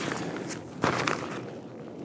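Six Moon Designs Swift X backpack being handled: its shoulder straps and plasticky LiteSkin fabric rustling, with a few soft knocks, the loudest a little under a second in.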